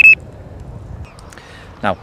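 Fox MXR+ bite alarm sounding a high-pitched beep at its top tone setting, which cuts off just after the start; then low, quiet background until a man starts speaking near the end.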